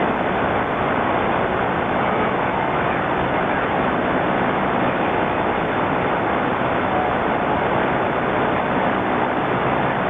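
Steady hiss of static and band noise from an 11-metre shortwave transceiver's speaker, with no station coming through on the frequency.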